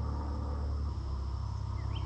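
Outdoor creek ambience: a steady low rumble, a faint high insect drone, and a short bird chirp near the end.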